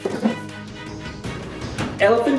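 Background music with held notes and a steady pulse, with a short knock just after the start.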